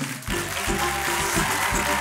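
A house band playing a short instrumental piece, with violin and guitars over a bass line and drums.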